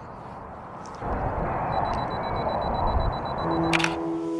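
Wind rumbling on the microphone, rising about a second in, with a faint high steady tone above it. A sharp click sounds near the end as soft music notes begin.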